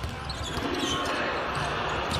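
A basketball being dribbled on a hardwood court over steady arena background noise.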